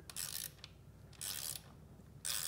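Socket ratchet clicking on its back-swings as a bolt is run in and tightened, in two short bursts about a second apart.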